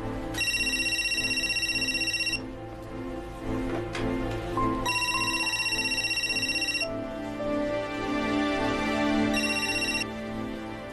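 Cordless telephone's electronic ringer trilling in three rings of about two seconds each, about four and a half seconds apart, over background film music.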